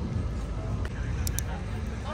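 Outdoor background noise: a steady low rumble with faint voices in the distance and a couple of light clicks about a second in.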